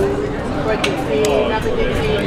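Café chatter from surrounding voices, with a few light clinks of tableware about a second in.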